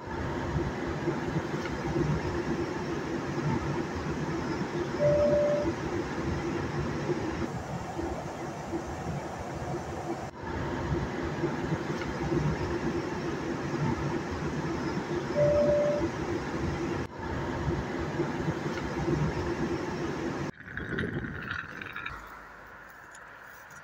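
Jet airliner cabin noise: a steady engine and air drone with a low hum, heard from a window seat in flight and on descent. Two brief beeps come about ten seconds apart. The drone breaks off near the end.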